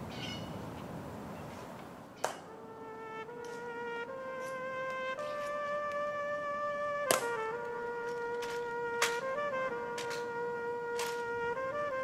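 Sharp, single clicks at intervals from the honor guards' heel clicks and rifle handling during the changing of the guard, over a steady horn-like tone that holds one pitch, steps slightly higher and wavers briefly.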